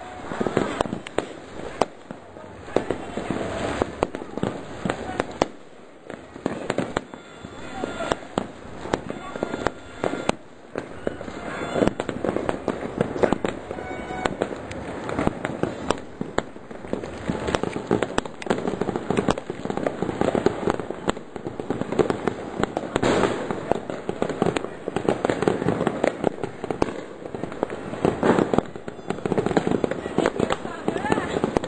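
Fireworks going off, a rapid run of many overlapping bangs and pops, growing denser and louder in the second half.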